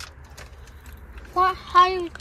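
A low steady hum in a car cabin with a few faint ticks of handling, then a voice giving two short pitched syllables near the end.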